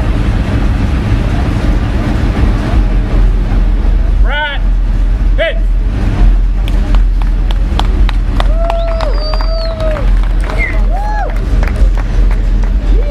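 A small crowd clapping, with whoops and a long drawn-out shout, over a steady low rumble. The clapping picks up about halfway through.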